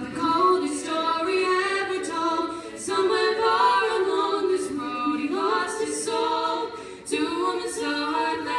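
Female a cappella group singing a pop song in close harmony, voices only, with sustained backing chords under the lead, pausing briefly about three seconds and seven seconds in.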